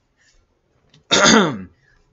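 A man clearing his throat once, a short burst about a second in whose pitch falls as it ends.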